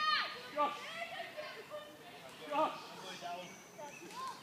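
Children playing and calling out at a distance, with several short shouts and cries scattered through.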